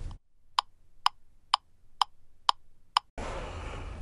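Six sharp, evenly spaced ticks, about two a second, over dead silence where the room sound has been cut out.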